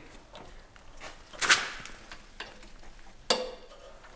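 Hand handling the throttle pedal linkage and its added coil spring on a John Deere 140 garden tractor, giving a few light metal clicks and scrapes. There are two sharper clicks, one about one and a half seconds in and one near the end.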